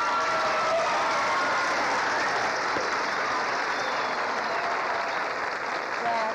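Studio audience applauding a correct answer, a steady wash of clapping that eases off slightly toward the end.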